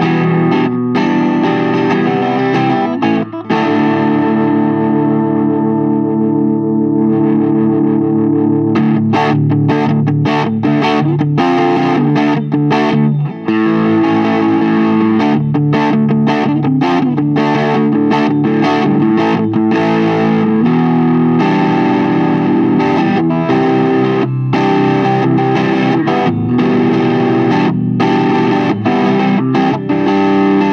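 Electric guitar played through a Diamond Pedals Drive overdrive pedal and a Mesa/Boogie Mark V:25 amplifier, with a crunchy overdriven tone. It begins with held, ringing chords, then moves into a choppy strummed rhythm from about nine seconds in.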